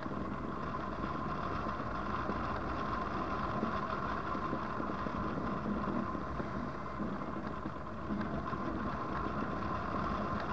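Steady rush of air over a hang glider in flight, buffeting the microphone, with a faint steady hum running through it.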